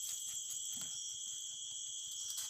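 A chorus of night insects singing steadily, several unbroken high-pitched tones layered together.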